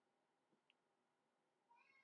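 Near silence: room tone, with a faint, brief high-pitched call near the end.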